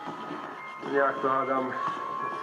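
A man speaking briefly, with a steady high tone running underneath from about half a second in.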